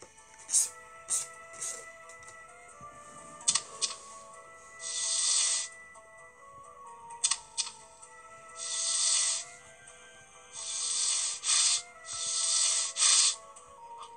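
Soft background music from a children's story app, with four swishing brush-stroke sound effects, each about a second long, as blood is painted onto doorposts. A few sharp clicks fall in between.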